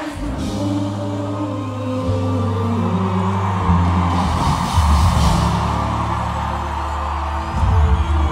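Live pop concert music over a big PA system, with deep held bass notes and singing over it.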